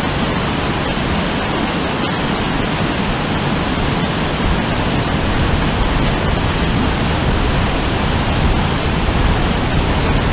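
A tall, stepped mountain waterfall, about 60 to 70 feet high, pouring down rock steps in a steady, full rush of water. It gets slightly louder in the low end after about four seconds.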